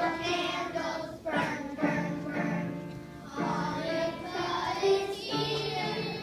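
A group of young children singing a song together on stage, in phrases of about two seconds.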